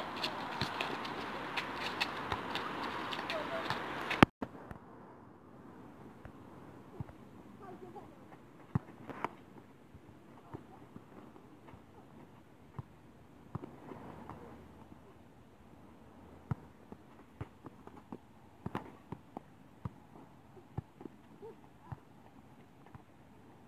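Scattered sharp thuds of a football being kicked and striking the ground on an outdoor tarmac court, with running footsteps. For about the first four seconds a louder noisy background with voices runs under them, then it cuts off abruptly with a click.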